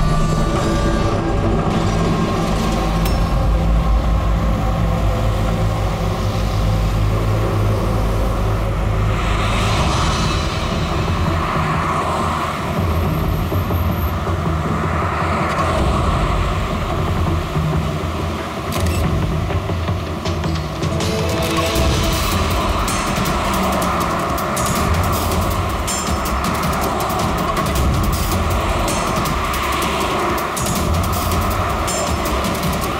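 Dramatic background score with sustained tones, which turns busier with rapid high percussive ticks in the second half. Cars driving along a road are mixed in underneath.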